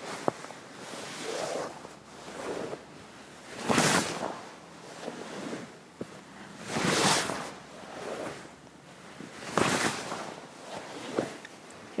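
Fabric of a karate uniform swishing and rubbing against a lapel microphone as the wearer moves through a sequence of blocks, with three louder swishes about 4, 7 and 10 seconds in and a couple of small clicks.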